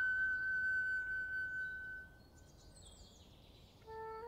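A flute holds one long high note that fades out about halfway through, leaving a short pause where faint birdsong chirps can be heard; flute notes come back in just before the end.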